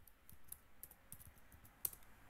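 Computer keyboard typing: a quick, faint run of key clicks as a web address is typed, with one sharper, louder click near the end.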